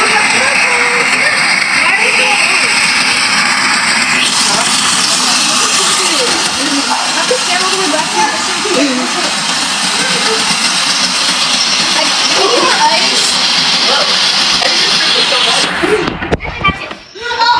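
Electric Nostalgia snow cone machine running, its motor-driven blade grinding ice cubes into shaved ice with a steady grinding noise; the tone shifts about four seconds in.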